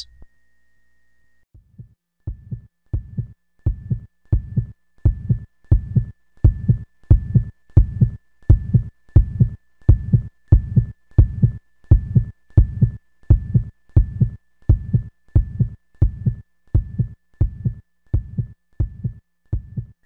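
Heartbeat sound effect: a steady low pulse at about two beats a second, starting about a second and a half in, with a faint thin high tone held behind it.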